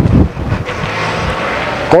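Wind buffeting a clip-on microphone: a few low rumbling thumps at the start, then a steady rushing hiss.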